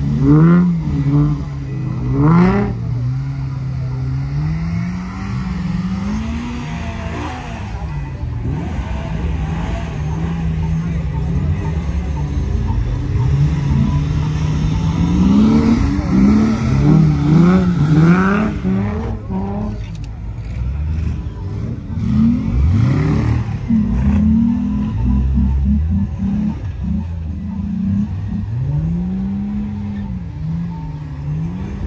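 Off-road 4x4 engines revving hard over and over, their pitch rising and falling, as vehicles such as Jeep Wranglers power up a steep sand dune. Several engines are heard at once, with the loudest bursts of revving about a second in, around the middle, and again a few seconds after.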